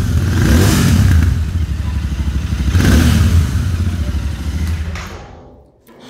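Royal Enfield Continental GT 650's 648 cc parallel-twin exhaust note, idling with two short blips of the throttle, at about half a second and about three seconds in. The sound dies away near the end.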